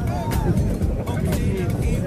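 A steady low rumble under background music, with a faint voice briefly near the start.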